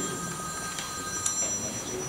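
A mobile phone ringing: several steady high tones sound together, then cut off shortly before the end.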